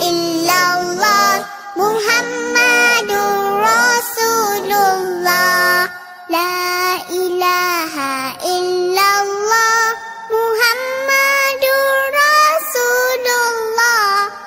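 A child singing a melody in phrases of a couple of seconds each, with a short break about six seconds in.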